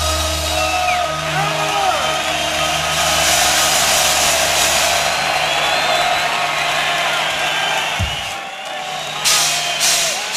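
Arena crowd cheering and whistling between songs, over a held low bass note that cuts off with a thump about eight seconds in. Electric guitar strums start near the end, leading into the next song.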